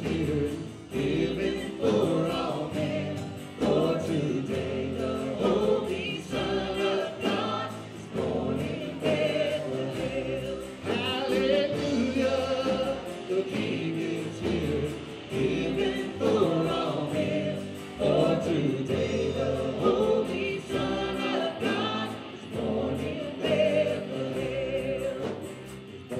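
Live worship song: a man and women singing together with acoustic guitar, bass and drums.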